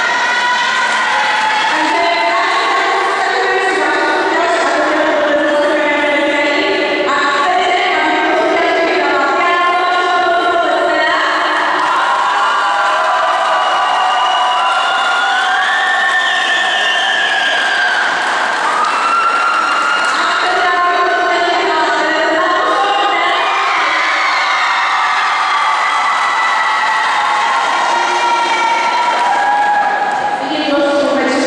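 A song with sung vocals, carrying on at a steady loud level, over crowd noise from an audience.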